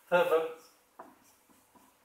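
Felt-tip marker on a whiteboard: a sharp tap as it meets the board about a second in, then a few faint short strokes.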